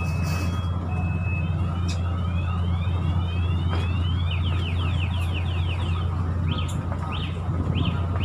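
A ship's machinery drone, low and steady, fills the deck. A run of quick, high, rising chirps sounds over it for several seconds in the middle, coming faster toward the end.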